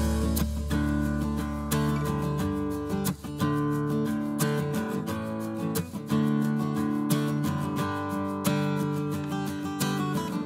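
Instrumental background music led by guitar, with notes changing every second or so and a low bass note that fades out about halfway through.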